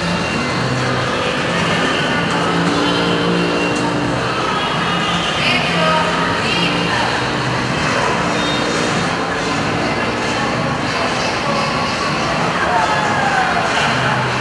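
Indistinct talking and some music over a steady, loud background din in an ice rink.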